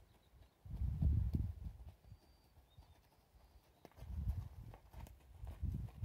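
Faint hoofbeats of a horse walking on sandy dirt, with low rumbles about a second in, again near four seconds and near the end.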